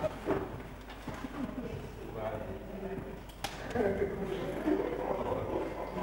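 Indistinct voices of people talking among themselves, with a single sharp click about three and a half seconds in.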